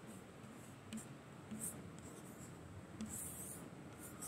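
Chalk writing on a blackboard, faint: a few short scratching strokes, then a longer scratch about three seconds in.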